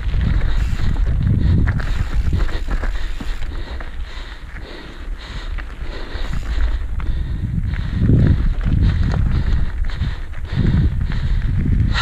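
Mountain bike riding fast down a dirt trail: wind rumbling on the camera microphone, tyres rolling over dirt and stones, and the bike rattling and clicking over bumps, easing off for a couple of seconds in the middle.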